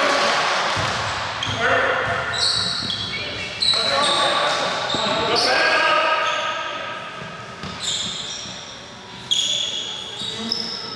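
Basketball game sounds in an echoing gym: players' voices, a basketball bouncing on the court, and short high squeaks of sneakers on the floor.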